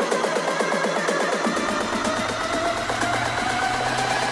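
Electronic dance music mixed live by a DJ: a fast beat of about four strokes a second with the bass filtered out, the low end coming back in about a second and a half in, while a synth tone slowly rises in pitch.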